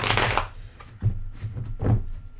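A deck of tarot cards being shuffled by hand, in three runs: a loud one at the start, another about a second in, and a short one near the end.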